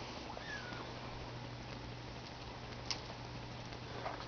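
A faint, short, high call from a small pet about half a second in, then a single sharp click near the end, over a steady low hum.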